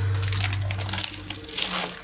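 Clear plastic sleeve crinkling as a planner cover inside it is handled, in irregular rustles with a louder patch near the end.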